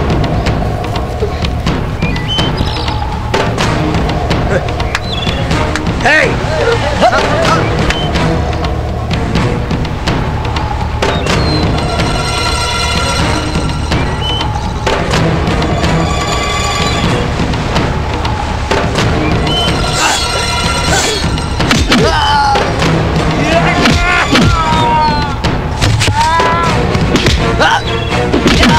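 Dramatic film background score playing throughout, with held tones in the middle, and with shouting voices and a few thuds of a staged fight over it.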